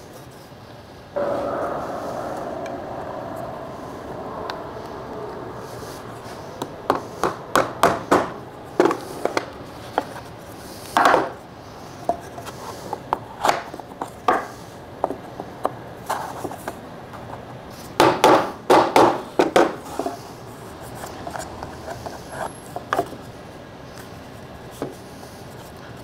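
Wooden boards handled against a plywood jig: a rubbing sound starts about a second in and fades, then a run of short, sharp wooden knocks and clacks as the pieces are set against the fence, with the busiest clusters in the middle and again about three-quarters of the way through.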